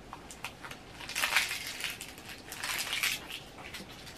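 Close-up chewing of a chewy caramel cream candy: sticky, wet mouth clicks and crackles, coming in two bursts about a second in and again near three seconds.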